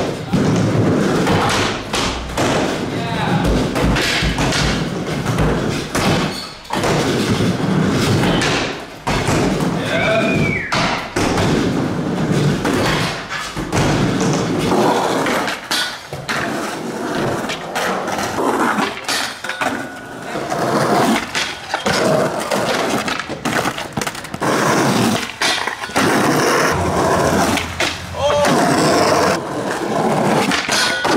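Skateboards in use: wheels rolling on a wooden mini ramp and on concrete, with repeated sharp knocks of boards popping and landing, and a board grinding a metal rail.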